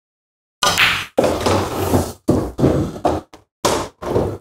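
Pool shot: the cue strikes the cue ball and it clacks into the eight ball about half a second in, then a string of knocks and rolling as both balls drop into a pocket and run through the table's ball-return. The cue ball following the eight ball in is a scratch.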